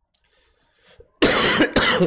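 A man coughing twice in quick succession, loud, starting just over a second in after near silence.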